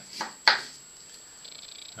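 A small kitchen knife cutting through a yacon's woody crown to split off an offset: two short, sharp crunching cuts in the first half second, the second the louder. Faint small ticks follow near the end.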